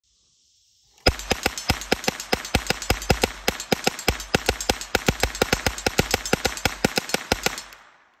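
Tippmann Ordnance .22 LR Gatling gun fired by turning its hand crank: a sustained string of rapid rimfire shots, about six a second, starting about a second in and stopping just before the end.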